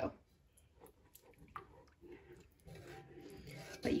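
Milk poured from a carton into a thick flour-and-milk sauce in a cast iron skillet, then a silicone whisk stirring it: faint wet squishing with a few light clicks.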